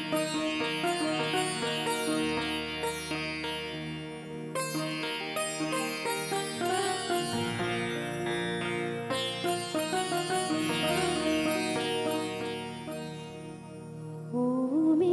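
Live band playing an instrumental passage of a Hindi film song: a plucked-string melody over sustained keyboard chords, fading a little near the end.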